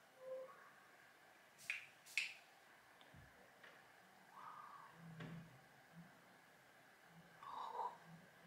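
Near silence with faint small handling sounds of a loose-pigment jar and makeup brush: two short clicks close together about two seconds in, and a faint tick later.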